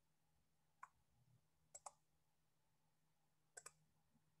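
Faint computer mouse clicks in near silence: a single click about a second in, a quick double click near two seconds, and another double click near the end.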